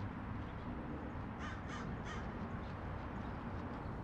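A crow cawing several short times in quick succession, about a second and a half in, faint over steady outdoor background noise.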